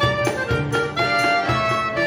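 Klezmer band playing: clarinet on the melody with accordion and violin, over a low beat about twice a second.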